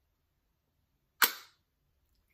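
Magnetic lid of a small round bamboo box snapping shut: one sharp click about a second in.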